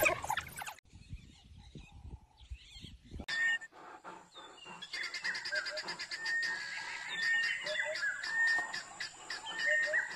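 African wild dogs' high-pitched twittering calls, loud and dense for the first second. After that there is fainter, repeated chirping, with a thin steady high-pitched whine behind it.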